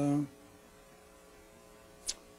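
A man's brief, drawn-out "uh", then a faint, steady electrical hum.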